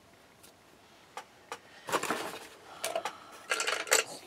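Cardboard being handled and torn at its edges by hand: scattered small clicks and two short rasping spells, about two seconds in and again near the end.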